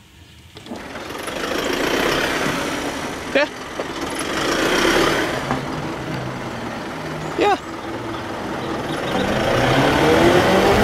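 A box lorry's engine running at close range, with road noise and two brief squeaks about three and a half and seven and a half seconds in. Near the end the engine note starts to rise as it pulls away.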